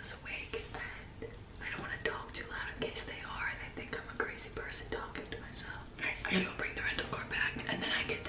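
A woman whispering close to the microphone, ASMR-style, in short breathy phrases with small clicks between them.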